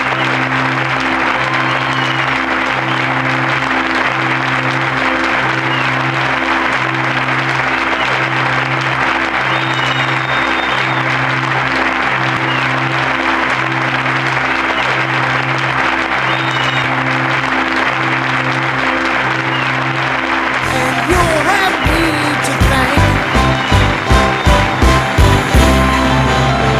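A large audience applauding over music with a low pulse about once a second. About 21 seconds in, the applause gives way to a run of sharp percussive hits that come faster and faster, leading into theme music.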